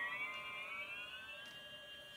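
A sustained guitar tone through an effects pedal, its stacked harmonics gliding slowly upward in pitch as a knob on the pedal is turned, with no new notes picked. It fades gradually.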